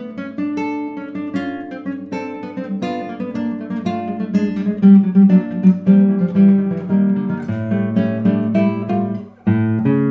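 Solo classical guitar with nylon strings played fingerstyle: a steady run of plucked notes and chords that grows louder about halfway through. Near the end it stops briefly, then a new chord is struck.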